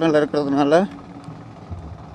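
A voice speaking for just under the first second, then soft background music with long held notes.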